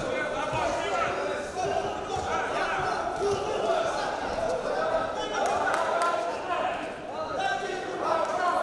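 Amateur boxing bout in a large hall: repeated thuds from the boxers' gloves and feet on the ring, over voices calling out from around the ring. A few sharper knocks stand out between about five and six seconds in.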